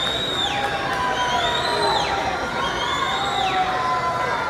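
Swim-meet crowd cheering for swimmers during a race. A high-pitched cheer rises, holds and drops off sharply, repeating about every second and a half over the general crowd noise.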